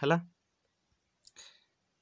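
A single faint click about a second and a quarter in, followed by a brief soft hiss: a fingertip tapping a phone's touchscreen to open the drawing tool.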